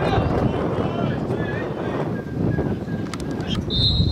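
Outdoor football match sound: shouting voices of players over wind buffeting the microphone, then a short, steady, high referee's whistle near the end.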